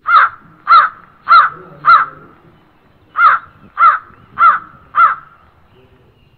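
A crow cawing: two runs of four loud calls, about 0.6 s apart, with a pause of about a second between the runs.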